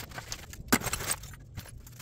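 Small pieces of scrap metal clinking and jangling against each other in a plastic tote as a gloved hand rummages through them, with one sharper clink a little under a second in.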